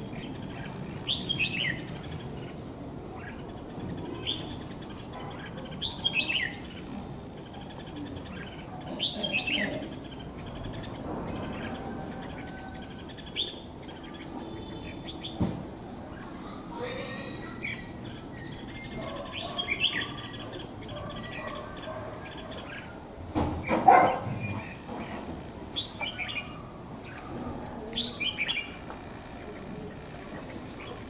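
Red-whiskered bulbuls calling in short chirping phrases every few seconds, each a quick falling note, with a brief louder noise about two-thirds of the way through.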